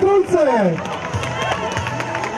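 Spectators cheering the runners along the course: a loud, drawn-out shout falling in pitch at the start, then mixed shouting and crowd noise.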